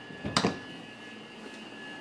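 A sharp double knock about a third of a second in, over a steady hum with two thin high tones.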